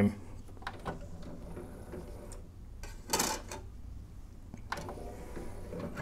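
Sony CDP-611 CD player's motorised disc tray: a few light clicks as the disc is set in, then about three seconds in a short whirr and clunk of the tray drawing shut, with a low hum underneath.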